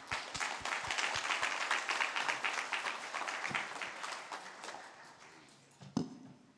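A congregation applauding: the clapping starts at once, is fullest in the first few seconds and then dies away.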